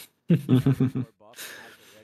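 A man laughing: a quick run of short 'ha-ha' pulses lasting under a second, followed by a breathy exhale.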